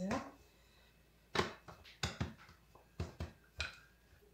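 A handful of short, sharp knocks and taps, about six of them, coming irregularly from about a second and a half in: a wooden rolling pin and a thin sheet of dough being handled on a kitchen countertop.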